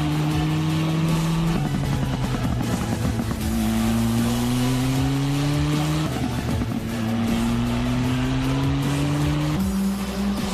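Open-wheel race car engine accelerating hard through the gears: its note climbs steadily in each gear and drops at upshifts about one and a half, six and nine and a half seconds in. Music plays underneath.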